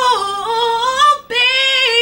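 A woman singing a cappella, holding long notes that slide up and down, with a short break for breath a little over a second in.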